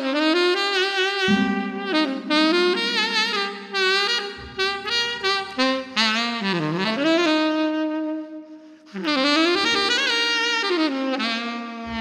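Tenor saxophone playing a slow, lyrical solo melody with a wavering vibrato over steady, held low accompaniment tones. The line breaks off briefly about eight and a half seconds in, then a new phrase begins.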